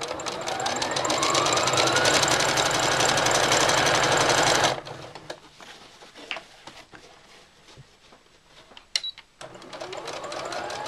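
Sewing machine stitching a seam, its motor speeding up over the first couple of seconds, then running fast and evenly before stopping suddenly about halfway through. A few faint clicks and taps follow.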